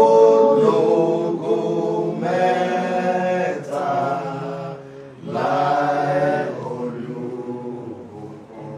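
Unaccompanied voices chanting in long, drawn-out sung phrases, with short breaks between them.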